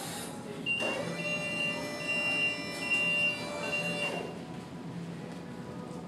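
Electric lift running as it raises a load: a steady whine starts about a second in and stops around four seconds, with a high beep pulsing two to three times a second over it.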